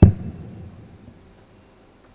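A single steel-tip dart striking a Unicorn Eclipse HD2 bristle dartboard: one sharp, loud hit with a low fading ring after it.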